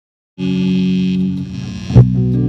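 Loud, steady electric hum and buzz from a guitar amplifier and PA in a rehearsal room, after a brief dead silence. It ends in a sudden loud strike as the band comes in.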